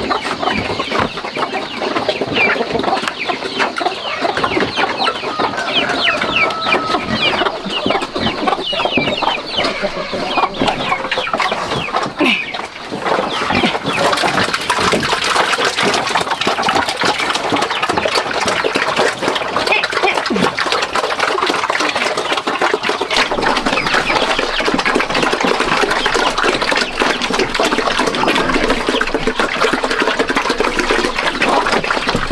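Chickens clucking. About halfway through, a dense run of quick chomping and slurping sets in as a group of pigs eats feed from their trough.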